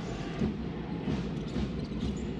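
Basketball arena crowd ambience: a steady murmur of spectator noise under the live play.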